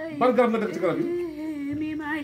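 A person's voice humming a long, steady note, with other voices speaking briefly over it.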